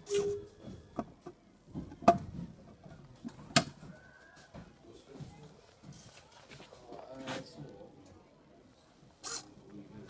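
A homemade plywood safe with a servo lock being unlocked and its door opened: a brief servo whir at the start, then sharp wooden clicks and knocks, the loudest about two and three and a half seconds in.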